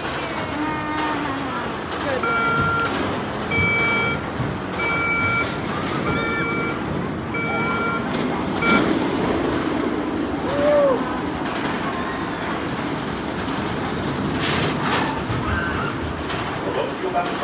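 Electronic warning beeps, about six short beeps at an even spacing of roughly a second, over a steady outdoor din. As the beeping stops, a steel roller coaster train rumbles along the track overhead for a few seconds.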